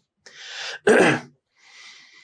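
A man draws a breath, then clears his throat once about a second in.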